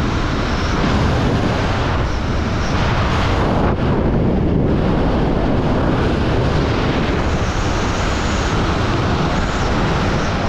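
Wind rushing hard over a skydiver's camera microphone high in the air, a loud steady roar that eases briefly in its hiss about four seconds in.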